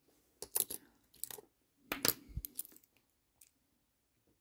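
Brass Hong Kong ten-cent coins clinking against each other as they are handled and picked up from a pile, in a few short clusters of light clicks.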